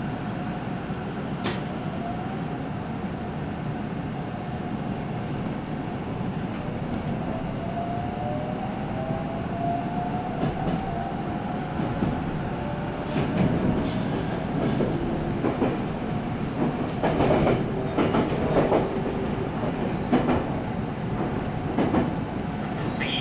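JR 313 series electric train gathering speed: the motor whine rises in pitch over the steady running noise. About two-thirds through, the wheels click and clatter loudly over the points and rail joints, with a thin high wheel squeal for a couple of seconds.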